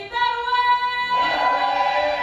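A mixed chorus of voices sings a held chord without accompaniment, the band dropped out; more voices fill in the chord about a second in.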